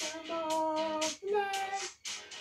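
A voice singing two long held notes: the first lasts about a second, the second is shorter and ends just before the close.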